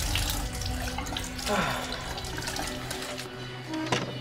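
Water running from a tap into a washbasin, over soft background music. A short sharp click comes near the end.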